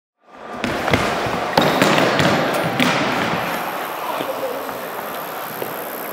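A mini BMX and its rider crashing on a skatepark ramp: a run of sharp clattering knocks in the first three seconds, settling into steady noise.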